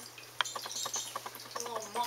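Ragdoll kitten eating from a metal bowl: a run of small quick clicks, about five a second. A brief high call comes near the end.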